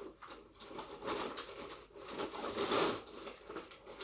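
European hornet rasping at the surface with its mandibles: irregular crackling and scraping in uneven surges, loudest about three seconds in.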